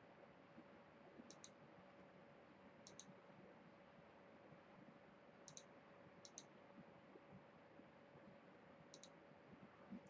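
Faint computer mouse clicks over near-silent room tone: five in all, spaced a second or more apart, each a quick press-and-release double tick.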